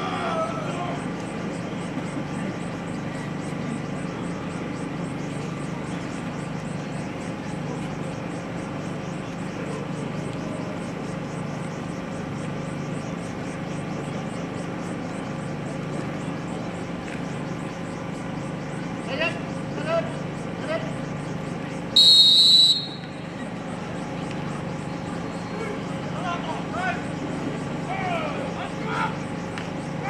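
A referee's whistle blown once, a sharp high-pitched blast of under a second, about two-thirds of the way through. It sounds over a steady crowd murmur, with a few voices calling out before and after it.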